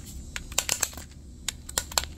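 Irregular light plastic clicks from a homemade air-powered toy car's engine and wheels as it is pushed by hand over concrete. The bottle holds water and the engine is not driving the car itself.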